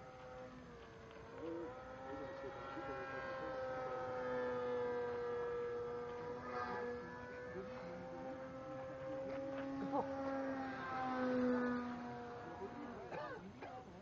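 Radio-controlled model airplane's motor and propeller: a steady buzzing tone that dips and rises in pitch as the plane flies past. It grows loudest around the middle and again near the end, then fades.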